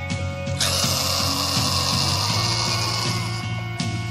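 Black/death metal recording: bass and drums go on under a loud hissing wash that comes in about half a second in and dies away just before the end.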